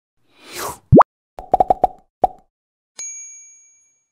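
Logo sting made of cartoon sound effects: a whoosh, a loud rising bloop, a quick run of pops and one more pop, then a bright chime that rings and fades.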